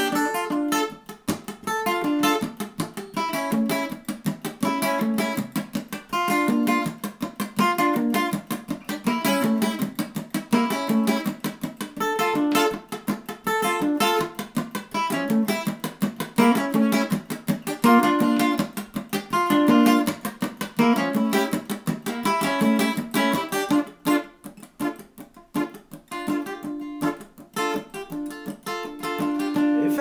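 Acoustic guitar strummed in a steady rhythm as an instrumental break between sung verses of a folk song. The playing drops to quieter, sparser strokes for a few seconds near the end, then picks up again.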